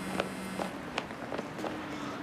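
Hurried running footsteps on pavement, a few sharp steps each second, over a faint low steady hum.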